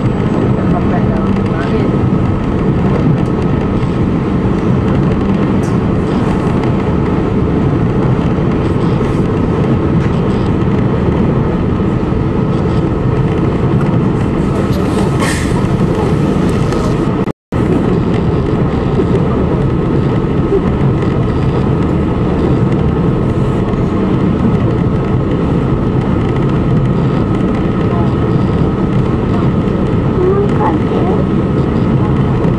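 Passenger ferry's engines running at cruising speed: a steady low drone with a faint thin whine above it, under the rush of wind and water past the boat. The sound cuts out for an instant about 17 seconds in.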